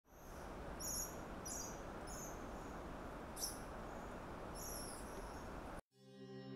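Quiet nature ambience: a steady low rush of background noise with short, high-pitched animal chirps about once a second. It cuts off suddenly near the end.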